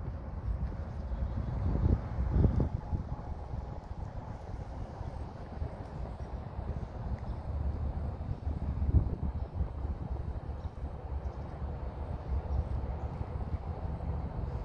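Wind rumbling on a phone microphone outdoors, uneven and low, with a few handling thumps about two seconds in and again near nine seconds.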